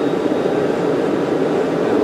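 Blown propane forge running with a steady rushing noise from its burner flame and air supply, while the combustion air is being turned down to tune the flame toward an even burn.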